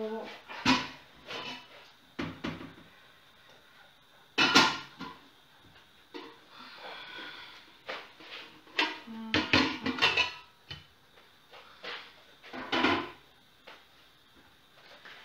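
Handling sounds of buns on parchment paper being set into a stainless steel steamer pot: paper rustling and scattered knocks and clinks against the metal.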